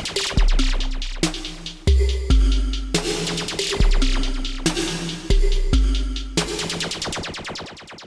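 Roland TR-6S drum machine playing an electronic beat with long, deep bass-drum notes and bright hi-hat hits, while its reverb and delay levels are turned up by hand. Near the end a fast run of repeating hits fades away.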